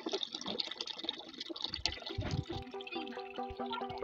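Water running from a brass tap into a plastic bucket, filling it. Background music fades in about halfway through.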